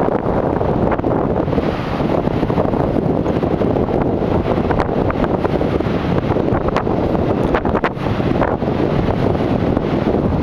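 Strong wind buffeting the camera's microphone, a loud, steady rumble with a few brief crackles.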